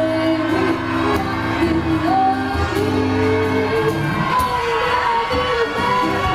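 Live performance of a woman singing into a microphone with an acoustic guitar playing chords, her voice sliding between long held notes.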